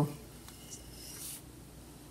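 Faint rustling of hands rubbing a grated coconut and rice flour mixture in a steel bowl, heard mostly from about half a second to a second and a half in.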